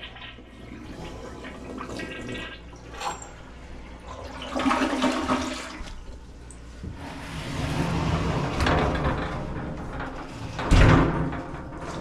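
Toilet flushed by its tank lever: water rushes through the bowl, swelling twice over several seconds as it drains. A single loud thump comes near the end.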